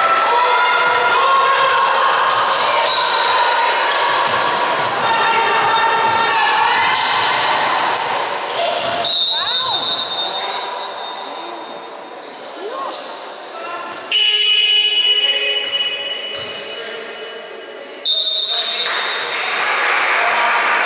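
Basketball game in an echoing gym: a dribbled ball bouncing, sneakers squeaking and players' voices during play. Then play stops with three sharp referee whistle blasts, about halfway in, a few seconds later and near the end.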